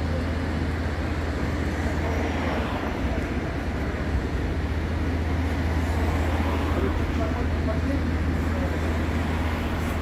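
City street traffic noise with a steady low engine-like hum running throughout.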